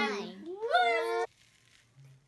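Voices drawing out the final 'one' of a countdown: a long, sung-out 'one' is followed by a second, rising 'one' echoing it.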